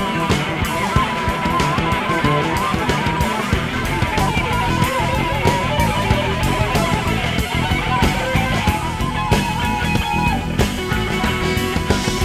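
Live free-jazz rock band playing loud and dense: electric guitars over electric bass and busy drumming, with a held, wavering lead line on top.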